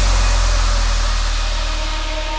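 Big room house track in a beatless break: a held deep bass note under a wash of white noise that slowly fades.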